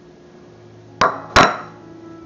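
Two sharp clinks about a second in, a fraction of a second apart, the second louder: a bowl knocking against hard kitchenware as chopped carrots are emptied from it into a slow cooker.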